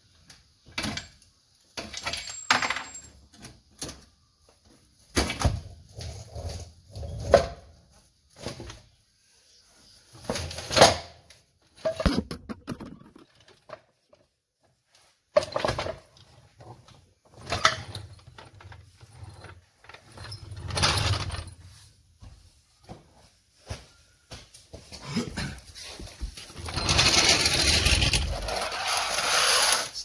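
Intermittent clunks, knocks and short scrapes as the Commodore's automatic transmission and wooden boards are shifted about on a concrete floor, then a longer continuous scraping near the end.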